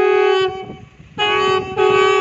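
Several conch shells blown together, sounding one steady horn-like note in held blasts. The note fades out about half a second in and comes back loudly just after a second.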